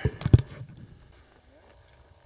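Two or three sharp, low bumps close to the camera microphone in the first half second, then quiet with faint voices in the distance.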